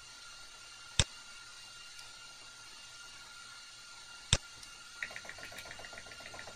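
Computer keyboard being typed on: two sharp single clicks about three seconds apart, then a quick run of light key taps near the end. A faint steady hiss with a thin high tone sits underneath.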